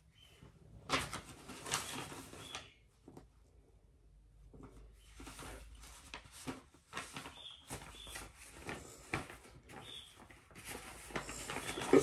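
Faint scratching and rasping of embroidery thread being picked and pulled out of cross-stitch fabric while stitches are unpicked, in irregular bursts with a short pause about three seconds in.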